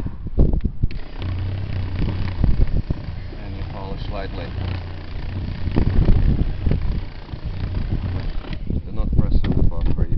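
Corded electric car buffer with a wool bonnet running against the paint, working polishing compound into badly weathered, oxidised paint; a steady motor hum with rubbing and knocks from the pad and handling. It starts about a second in and stops near the end, followed by handling clatter.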